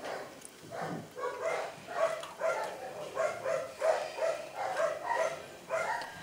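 A dog whimpering in a quick run of short, high-pitched cries, a sign of pain as its infected castration wound is treated.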